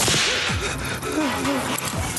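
A sharp whip crack with a swishing tail right at the start, over electronic dance music with a steady kick-drum beat.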